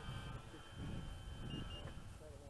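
Faint, steady drone of a radio-controlled Bearcat warbird model flying at a distance, under an uneven low rumble.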